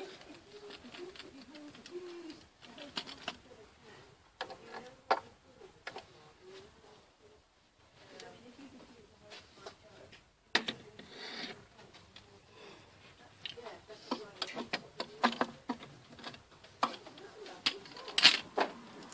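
Faint, indistinct voices in the background, with scattered clicks, knocks and rustles that come thicker in the second half.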